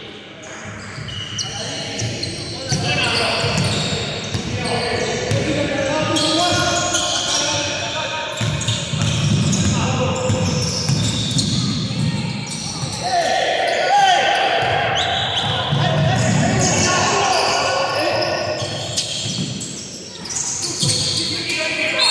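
Sounds of a basketball game in a gym: the ball bouncing on the hardwood court, shoes squeaking in short high chirps, and players calling out, all echoing in the large hall.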